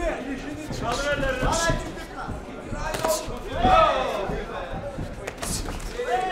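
Kickboxing strikes, gloved punches and kicks, landing as a few sharp thuds, the clearest one near the end. Men's voices call out over them.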